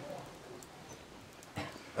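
A quiet pause in a man's talk: low, even room hiss, with a short intake of breath about one and a half seconds in, just before he speaks again.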